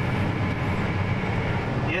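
Tractor diesel engine running steadily, a low drone heard from inside the cab.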